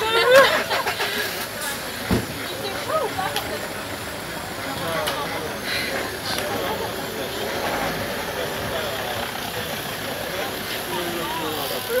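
Stationary bike trainers whirring steadily as several riders pedal, under background chatter, with a louder voice or laugh just after the start.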